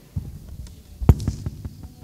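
A series of dull knocks and thumps, about eight of them, irregularly spaced. The loudest comes about a second in.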